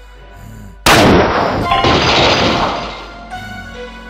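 Sound-effect blast of the space gun firing, about a second in: one sudden loud shot that dies away over about two seconds, with background music underneath.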